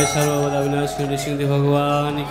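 A man's voice chanting a drawn-out invocation, holding a steady note in two long phrases.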